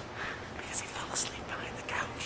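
A person whispering close to the microphone, in breathy bursts of hissing consonants with almost no voiced tone.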